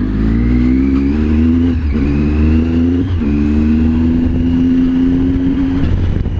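Triumph Tiger 800's three-cylinder engine accelerating from low speed and shifting up twice, about two and three seconds in, the revs dropping at each shift, then running steady.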